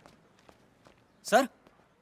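A few faint footsteps, about two a second, then a man says "Sir" loudly a little after halfway.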